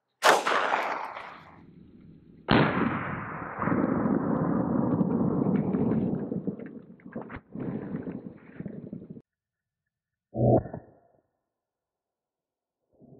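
A single shot from a J-frame revolver loaded with 158-grain .38 Special: a sharp crack that rings away over about a second and a half. A couple of seconds later comes a deeper, drawn-out boom lasting about six seconds, the shot heard again in the slow-motion replay. A brief thud follows near the end.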